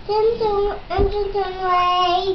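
A toddler's voice chanting a memorised Bible verse in a sing-song way, drawing the last syllable out into a long held note from about a second in.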